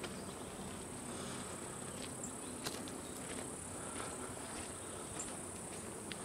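A steady, high-pitched insect drone from the surrounding forest, with scattered light crunches of footsteps on the dirt trail.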